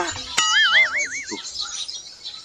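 A comic sound effect: a sharp click, then a short warbling whistle-like tone whose pitch wobbles up and down about five times over about a second.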